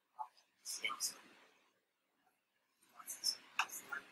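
A person speaking faintly, off the microphone, in two short stretches: one about a second in and another about three seconds in.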